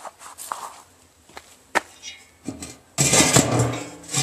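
A steel cover clanking and scraping against the steel top of a drum-built lead smelter as it is moved off an opening. There are a few light knocks, a sharp clink about halfway through, and a louder scraping clatter with a little metallic ring about three seconds in.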